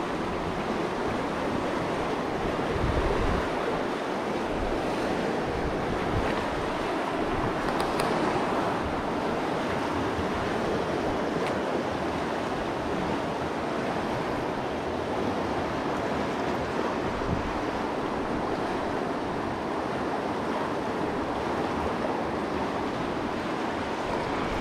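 Fast river water rushing steadily over rocks, the river running high with runoff.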